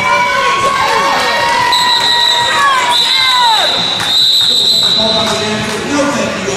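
Roller derby crowd in a gym hall shouting and cheering, their voices rising and falling. A long, steady high whistle sounds through the middle, broken once.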